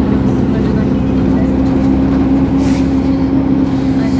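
City bus engine running with a steady low hum and road noise, heard from inside the moving bus.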